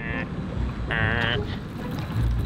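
Wind buffeting the microphone on an open boat gives an uneven low rumble. About a second in there is a short, high-pitched shout.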